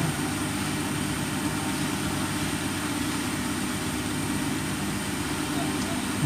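Steady low mechanical hum with a faint, constant high-pitched whine above it, unchanging throughout, with no distinct knocks or clicks.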